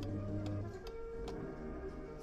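R.G. Mitchell Thunderbirds 2 kiddie ride playing music from its speaker: held notes, with a few sharp clicks about half a second apart.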